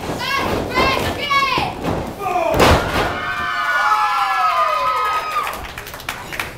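A wrestler's body hitting the ring canvas with one loud slam about two and a half seconds in, between high-pitched shouting voices. After the slam, one long yell slides down in pitch.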